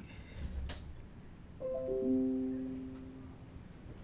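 A short piano-like chime: several notes struck in quick succession, high to low, about one and a half seconds in, ringing together and fading over about two seconds. A faint click comes shortly before it.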